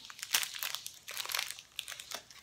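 Clear plastic soap wrapper crinkling in the fingers as it is handled and worked open, a run of irregular crackles.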